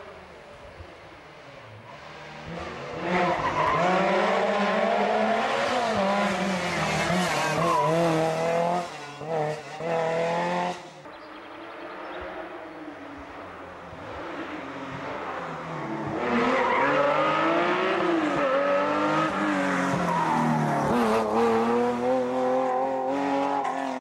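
Historic rally cars at full throttle on a stage. The engine pitch climbs and drops with gear changes in two loud runs, the first from about 3 to 11 seconds with a couple of brief lifts near its end, the second building from about 16 seconds.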